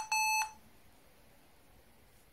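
Lenovo ThinkPad's built-in beeper sounding one steady electronic beep at startup that cuts off about half a second in, given as the machine reports POST errors (invalid RFID configuration area, invalid machine UUID).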